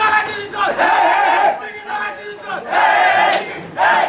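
A football team in a huddle shouting a team chant together, several loud group shouts in unison.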